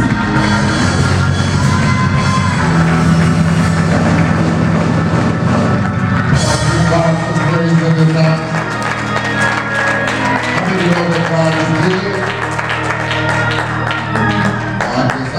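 Live church worship music: a band with a steady beat, drums and a low bass line, playing in a large hall.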